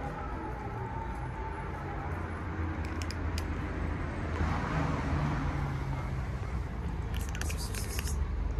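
Cats chewing dry kibble: a few crisp crunches about three seconds in and a quick cluster of crunches near the end, over a steady low rumble.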